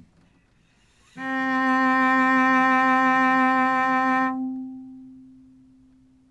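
Cello playing a single long bowed middle C (the C on the fourth line of the tenor clef), stopped on the D string in fourth position. The note starts about a second in, holds steady through one full down-bow, then rings on and fades after the bow stops.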